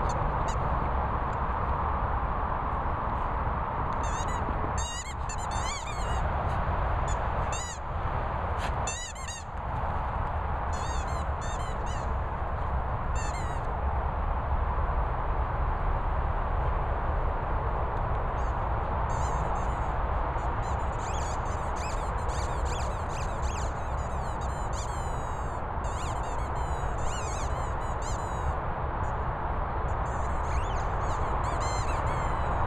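A dog's rubber squeaky toy squeaking in quick repeated clusters as it is chewed, over a steady rushing background noise.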